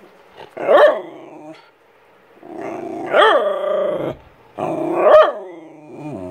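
Small dog vocalizing three times in whining, grumbling calls that each rise and fall in pitch, the middle one the longest: attention-seeking, wanting up on a lap.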